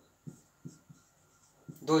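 Marker pen writing on a whiteboard: a few short, faint strokes, with a man's voice starting near the end.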